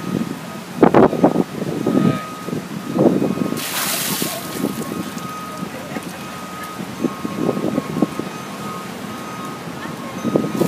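A bucket of ice water dumped over a person's head: a loud rushing splash lasting under a second, about three and a half seconds in. Voices of the group around it, before and after.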